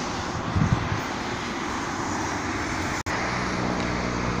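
Steady road traffic noise from a highway. The sound breaks off for an instant about three seconds in, then goes on with a steady low hum.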